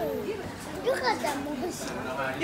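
Voices talking over one another, a child's voice among them.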